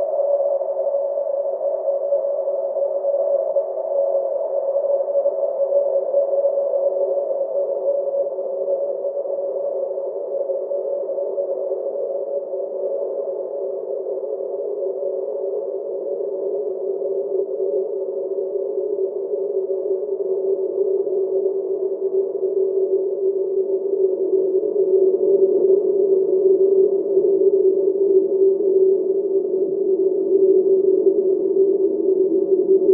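Cello holding one long, tied, sustained note through a band-pass filter, heard as a steady, somewhat noisy band of tone. Its brightest part slowly sinks lower in pitch, and it grows a little louder near the end.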